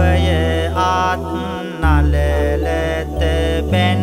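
A Buddhist monk sings Sinhala devotional verse in a melodic, gliding chant over a backing track with a deep held bass note that changes pitch twice.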